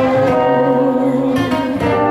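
Live band music with guitars playing held chords that change about one and a half seconds in.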